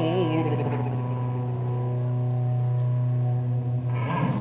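A rock band holding a long sustained final chord on electric guitar, ringing steadily at an even level. The last sung note bends and fades out in the first half second.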